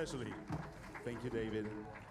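Speech: a voice talking, words not made out.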